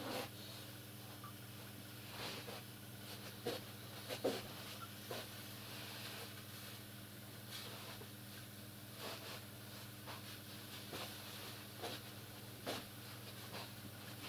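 A steady low electrical hum, with irregular short soft clicks and knocks scattered through it.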